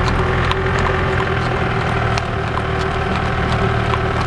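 A golf cart's motor running steadily alongside a gaited horse whose hooves clip-clop on the road surface in irregular sharp knocks.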